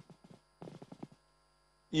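Steady electrical mains hum on the broadcast audio line, with a brief faint voice sound about half a second in and a man starting to speak at the very end.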